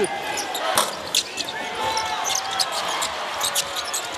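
Basketball bouncing on a hardwood court in a string of sharp, irregular thuds, with a few brief shoe squeaks and steady crowd noise from the arena.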